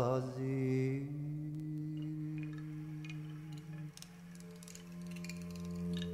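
Quiet, sustained low instrumental drone of medieval-style early music between sung lines, stepping up in pitch about four seconds in, with a few faint plucked or tapped notes. The tail of a male voice's sung phrase fades out in the first second.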